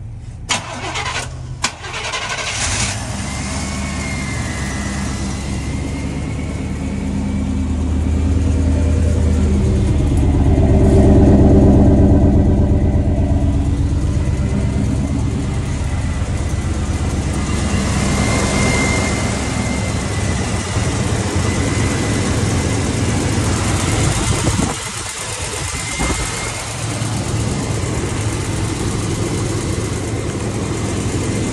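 Chevrolet K5 Blazer engine running, revved up and back down around the middle, with a thin high whine over the engine note. A few sharp clicks come in the first two seconds.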